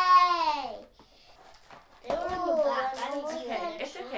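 A young girl's high-pitched, drawn-out exclamation, falling in pitch over about a second; after a short pause, a child's voice carries on with unclear words.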